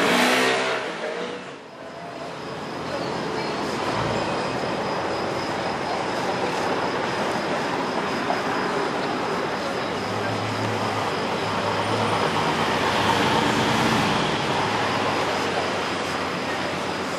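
A motor scooter passes at the very start. Then a Mercedes-Benz G 500 4x4²'s twin-turbo V8 runs at a low, steady drone as it rolls slowly past in street traffic, swelling a little near the end, over steady traffic noise and voices.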